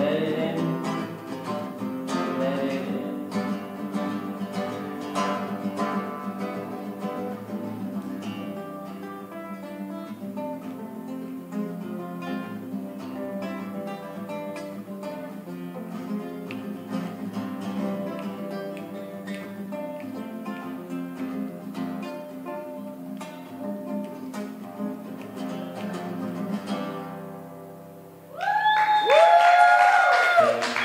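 Acoustic guitar playing an instrumental passage to the close of a song. The playing stops a little before the end, and a loud whooping cheer breaks out.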